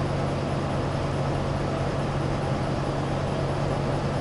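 A steady mechanical drone with a constant low hum, unchanging throughout.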